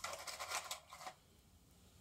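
Miniature plastic stadium seats clicking and rattling in a clear plastic container as a hand rummages through them. It is a quick run of light ticks lasting about a second, then near quiet.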